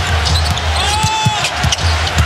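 A basketball being dribbled on a hardwood court, a few irregular bounces over the steady rumble of an arena crowd in a TV broadcast mix.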